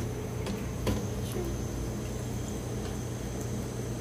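Steady hum of kitchen ventilation, with a couple of light clicks of cookware about half a second and a second in.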